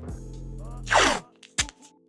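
Background music, with a short ripping rasp about a second in as a strip of blue painter's tape is torn, followed by a click; the music drops out briefly near the end.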